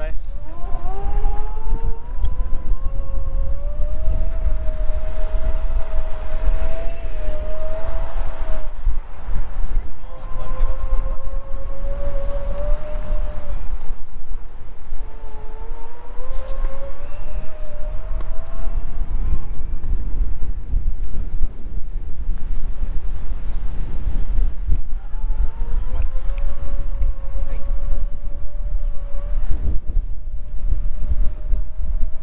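Electric scooter motor whining, its pitch climbing as the scooter picks up speed and then dropping out, four times. Under it is a steady rumble of wind and road noise on the microphone.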